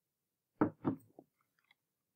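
Three short, close knocks or clicks: two louder ones in quick succession about half a second in, then a softer one, followed by a few faint ticks.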